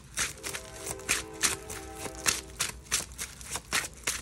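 Hands shuffling a deck of gold-foil tarot cards: a quick, irregular run of crisp card-edge flicks and slides. A faint held chord-like tone sits underneath from about half a second in until about three seconds.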